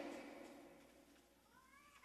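Near silence: faint room tone after a voice dies away, with a faint, brief rising call near the end.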